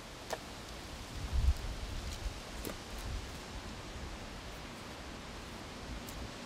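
Split firewood logs being handled at a woodpile: a few light wooden knocks and rustling over a steady outdoor hiss, with a dull low thud about a second and a half in.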